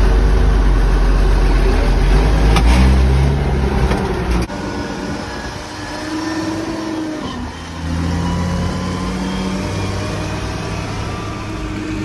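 Massey Ferguson 1200's Perkins A6.354 six-cylinder diesel engine running under way, heard from inside the cab. Its note steps up a little under three seconds in. The sound drops abruptly to a quieter, different engine note about four and a half seconds in, then grows louder again near eight seconds.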